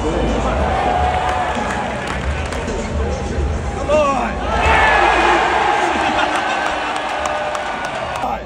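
Arena crowd cheering and whooping over loud PA sound, with the cheering swelling about four and a half seconds in.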